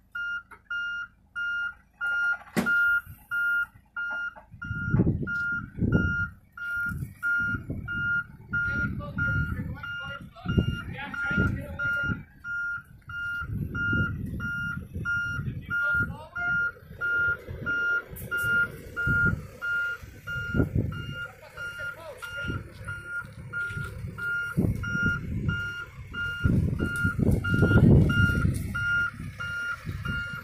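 Backhoe loader's reverse alarm beeping steadily at an even rate as the machine backs up, over loud, uneven low rumbling surges from its diesel engine working under load.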